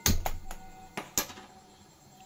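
About five sharp clicks in the first second and a quarter, the loudest at the very start: the igniter of a gas stove burner being clicked to light it.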